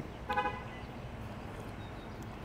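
A short car horn toot about a third of a second in, over a steady background of outdoor traffic hum.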